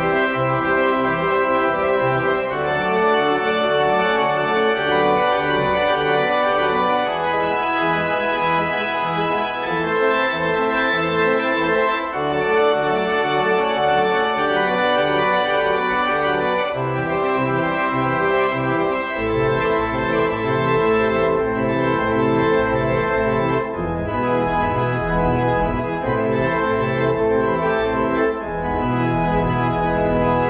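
Allen electronic church organ sounding through its loudspeakers at full organ, every stop drawn, playing sustained chords that shift every second or two in a freely wandering postlude. Deep bass notes come in strongly about two-thirds of the way through.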